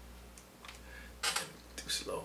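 Computer mouse and keyboard clicks with a short rustle as Bible software is brought up, over a steady low hum.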